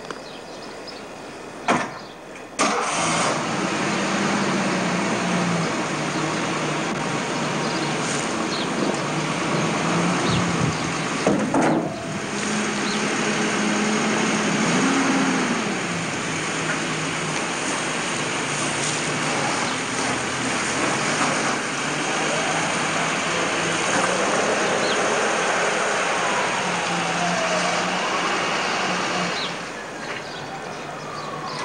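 An engine starts about two and a half seconds in, then runs steadily with one brief rev near the middle. A knock sounds shortly before the rev.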